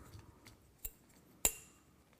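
Phone shoulder pod being fitted onto the ball mount of an all-metal Oben TT100 tabletop tripod: two sharp metal clicks about half a second apart, the second louder with a short ring.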